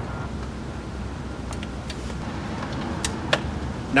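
Steady low outdoor background rumble, with a few light clicks as equipment is handled: one about a second and a half in and two close together around three seconds in.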